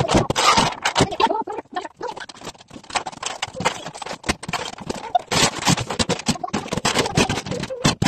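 A snow shovel being pushed and scooped across the floor, plastic toys clattering and rattling into it in quick irregular knocks and scrapes.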